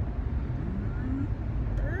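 Steady low road and engine rumble inside a moving car's cabin. A brief murmured voice comes in the middle, and a voice begins near the end.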